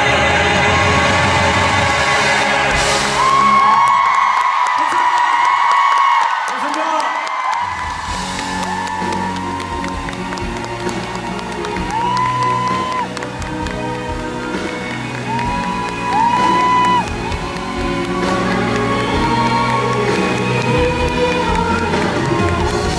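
Live concert sound: male voices singing in harmony over the band, the bass dropping out for a few seconds about four seconds in, then full band music with a steady beat comes back in for the curtain call while the crowd cheers.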